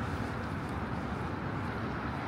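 Steady low rumble of city street traffic, with no distinct events standing out.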